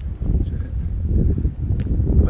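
Wind buffeting a phone's microphone: a loud, low rumble that swells and dips unevenly, with one sharp click near the end.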